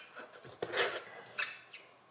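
Soda bottles being moved about inside a cardboard box, plastic straws rubbing in the holes of the box's top: a few faint rustles and light knocks.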